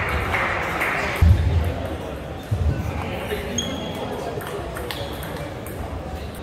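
A table tennis rally: a celluloid ball clicks off bats and the table in quick succession, with a heavy thud of a player's footwork on the hall floor just over a second in and another a little later. After that come scattered lighter clicks as the rally ends.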